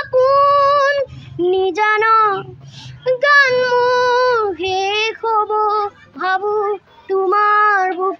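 A young boy singing solo and unaccompanied in a high, clear voice, holding long notes in short phrases with brief breaths between them.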